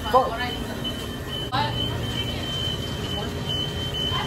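Fast-food kitchen background noise: a steady low hum of equipment with a thin, high, steady electronic tone running through it. There is a word at the start and a short burst of voice about a second and a half in.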